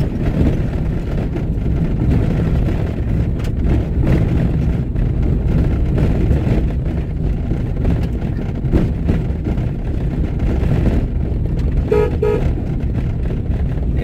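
Inside a vehicle driving on a dirt road: steady low engine and tyre rumble. Two short beeps sound close together near the end.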